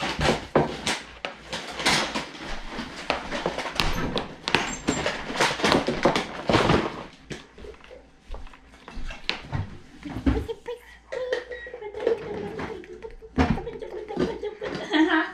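Clatter of sharp knocks and clicks at a meal table, dense for the first half and then sparser, with a faint voice near the end.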